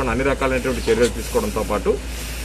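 A man speaking in Telugu over a steady low hum and hiss, pausing near the end.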